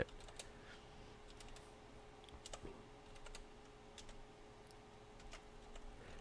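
Faint typing on a computer keyboard: a scattered, irregular run of light key clicks.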